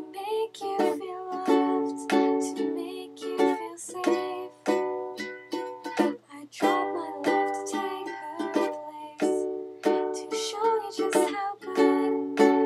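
Ukulele strummed in steady chords, about two strokes a second, with a woman singing softly over it in a small room. The strumming breaks off briefly about six seconds in, then resumes.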